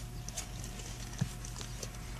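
Car engine idling with a steady low hum inside the cabin, with scattered light clicks and taps and one duller knock just past the middle.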